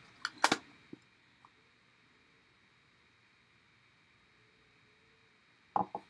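A few light clicks and knocks in the first second or so from a plastic ink pad case being handled on a table, then near silence.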